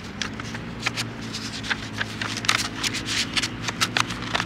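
A sheet of P1000-grit sandpaper crackling and rustling as it is handled and folded over, in quick, irregular crackles.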